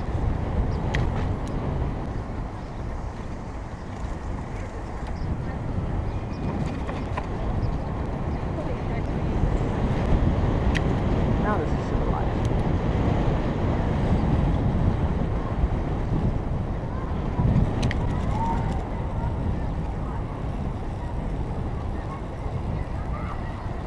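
Wind buffeting the microphone of a camera on a moving bicycle: a steady, loud low rumble, with city traffic underneath and a few faint clicks.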